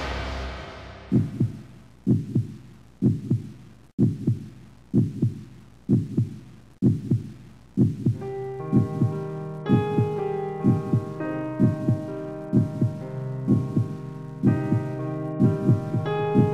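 Film-score heartbeat effect: slow double thumps, about one beat a second, beginning about a second in as a preceding hit dies away. About halfway through, sustained eerie keyboard chords join the beat.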